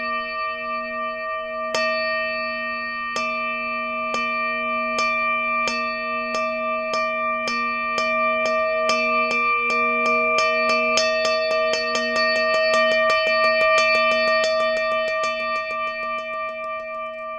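Steady, slightly pulsing ringing of a singing bowl, with sharp percussive strikes over it that start a couple of seconds apart and speed up into a fast roll toward the end.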